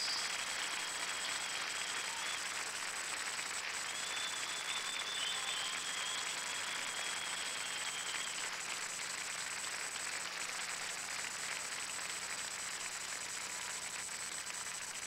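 Audience applauding steadily: a dense, even clatter of many hands. A thin, faint high tone runs through it for a few seconds from about four seconds in.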